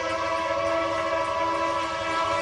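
Locomotive air horn blowing one long, steady chord of several notes.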